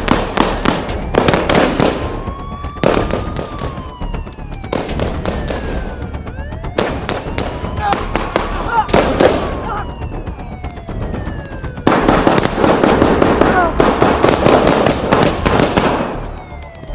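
Automatic-rifle gunfire in long rapid bursts, heaviest at the start and again over the last four seconds, with sparser shots and falling whistling tones between.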